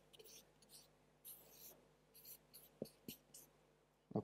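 Faint scratching of a marker pen drawing on a flip-chart pad, in a series of short strokes, with two soft taps about three seconds in.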